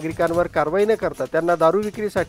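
A person's voice speaking continuously in a level, sing-song reading tone, with short breaks between phrases.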